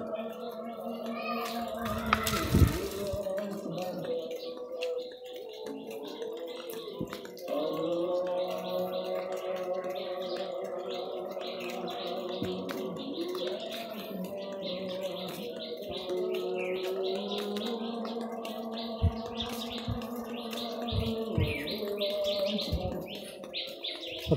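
A slow tune of long held notes in phrases, with birds chirping faintly above it. A short scuffing noise comes about two seconds in.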